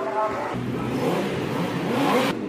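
A racing motorcycle engine running in a pit garage, coming in about half a second in, with voices over the start.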